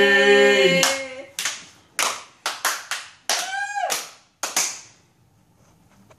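Amateur voices holding the last sung note of a song, cut off about a second in, then a handful of scattered handclaps spread irregularly over the next few seconds. Midway through the claps a voice calls out, falling in pitch.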